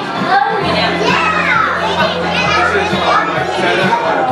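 Children's voices and chatter in a crowded room, with high pitched cries and calls. A steady low hum starts about half a second in and runs underneath.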